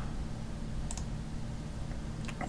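A computer mouse click about a second in, selecting an entry from a drop-down list, over a steady low hum.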